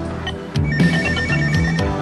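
An electronic telephone ringing in a pulsing, trilling high tone, starting a little over half a second in and stopping just before it is answered, over background music with a beat.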